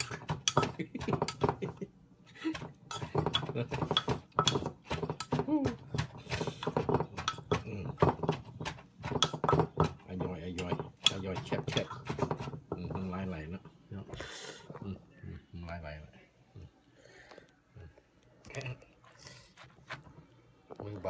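Wooden pestle knocking rapidly and irregularly in a wooden mortar as papaya salad is pounded and turned over with a spoon. The knocks thin out and get quieter near the end.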